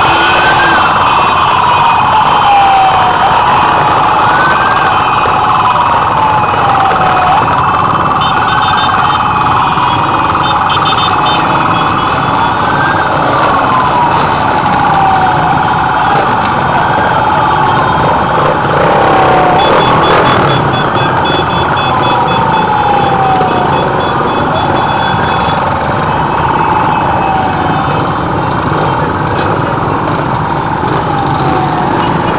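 A siren wailing, each cycle rising quickly and then falling slowly, about every four seconds, over the loud continuous din of a dense crowd of motorcycles and bicycles passing close by.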